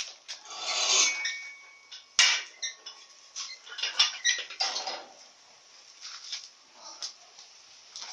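Irregular metal clanks and knocks, with a brief ringing tone, as a homemade steel-pipe training frame on wheels is lifted, shifted and set down.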